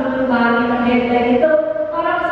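A man's voice through a microphone, drawn out in a chant-like way: long held notes of about a second each, with a step in pitch near the end.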